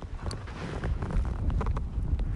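Wind buffeting the microphone, a low uneven rumble, with a few light clicks over it.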